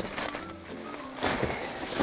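Soft background music, with the rustle of the Roofnest Condor tent's nylon fabric being pulled back over, in two swells: one at the start and one about halfway through.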